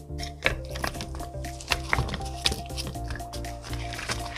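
Background music, with a few short soft knocks as sliced radish and onion pieces are laid into a pot.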